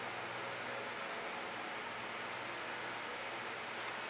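Steady background hiss with a faint low hum and no distinct events.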